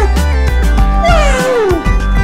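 A domestic cat meowing over background music. The end of one meow falls away at the start, then a long meow falls steadily in pitch from about a second in.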